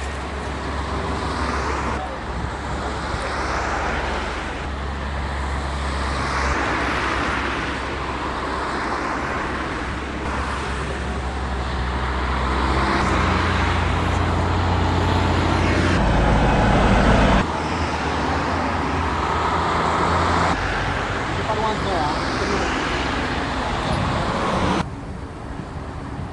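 Road traffic passing close by on a highway: cars swish past one after another over a steady low rumble. A heavy lorry going by makes the loudest stretch, in the middle.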